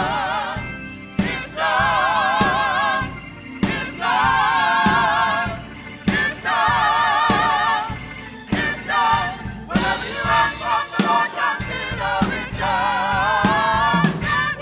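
Gospel choir singing in held phrases with wide vibrato, each a second or two long with short breaks between. A live band backs them, with regular drum hits.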